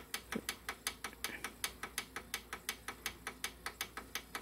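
Rapid, even mechanical ticking, about five clicks a second.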